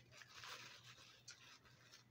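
Very faint rustling and scraping of packaging as a small iron wrapped in a plastic bag is lifted out of its cardboard box.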